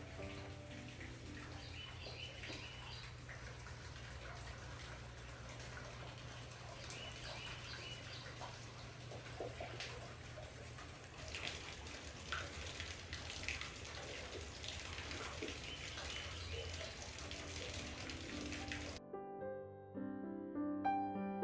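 Water dripping and trickling at a mill water wheel into its race, with many small drips over a steady low rumble. Birds chirp in short bursts a few times. Piano music comes back in near the end.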